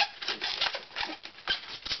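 Long latex modelling balloon being twisted by hand into small bubbles: a quick, irregular run of rubbing and squeaking of the stretched rubber.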